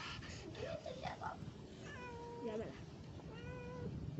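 Kittens meowing: three short meows, the first wavering in pitch, the next two held at a steady pitch.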